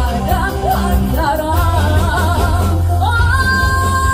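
Live band playing Korean pop music: a female vocalist sings over keyboard, electric guitar, bass and drums, her melody rising into a long held note about three seconds in.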